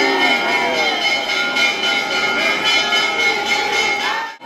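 Temple bells ringing without pause, struck over and over so that their tones hang steadily, over the voices of a packed crowd of devotees.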